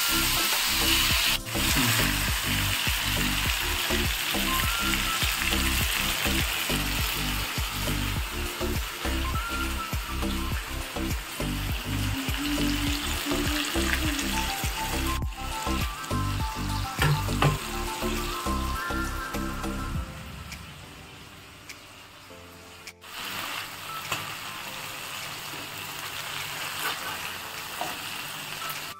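Marinated chicken pieces sizzling as they fry in oil in a nonstick pan, partly frying before they go into a gravy. For about the first twenty seconds, music with a steady beat plays over the sizzle, then stops, leaving the frying quieter.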